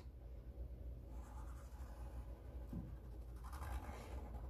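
Sharpie marker tip drawing a circle on white paper, a faint scratching of the felt tip.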